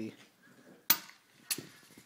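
Toy baseball bat swung by a baby knocking against something hard twice: a sharp crack about a second in, and a weaker second knock half a second later.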